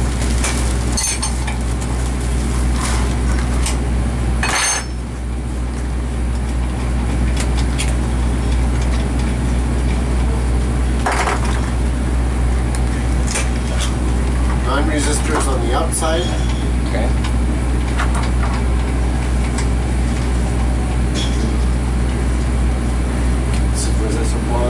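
MSD Mag 44 ignition test stand running with a steady hum, with scattered sharp metallic clicks and clinks as spark plugs are handled and swapped in the bench's plug mounts.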